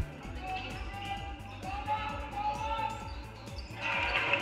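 Basketball game sound from the gym during live play: faint crowd and court voices with short squeaks and knocks.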